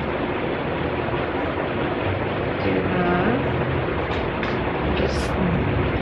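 Electric room fan running, a steady even noise.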